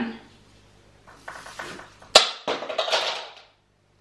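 A heavy Christmas tree topper falls off the tree: one sharp knock about two seconds in, followed by a second or so of rustling branches and clatter, then a sudden cut to silence.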